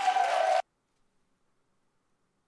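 TV studio audience applauding and cheering, with one held note over the noise, cut off abruptly about half a second in and followed by dead silence, as the playback is paused.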